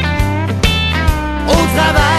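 Music: a song with guitar, a sustained bass line and a steady beat of about two strokes a second.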